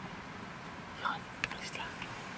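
Brief whispering: a few short, soft syllables starting about a second in, over a steady background hiss.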